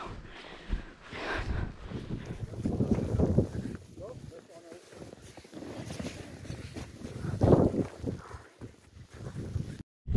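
Footsteps wading through deep, wet snow: irregular crunching and swishing as each foot sinks in, loudest about seven and a half seconds in. The sound cuts off abruptly just before the end.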